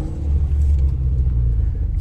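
Mitsubishi Lancer Evolution's turbocharged four-cylinder engine running at low revs, a steady low rumble heard from inside the cabin.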